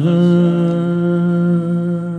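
A male singer holding one long, steady note into a microphone during a live song.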